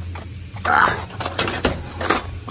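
Handling noise from a small Minn Kota electric trolling motor being gripped and moved by its tiller handle: a few sharp knocks and clicks, over a steady low hum.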